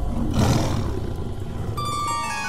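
A lion roars, loudest about half a second in, over background music. Bell-like music notes come in near the end.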